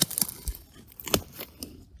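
Wooden sticks of a makeshift shelter frame cracking under load as the frame is tested: a series of sharp snaps and pops, the loudest a little past halfway.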